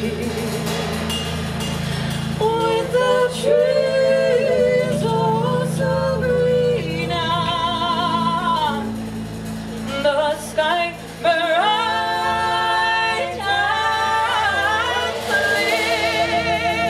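A woman singing live into a microphone, holding long sliding notes with vibrato, over a steady low drone accompaniment.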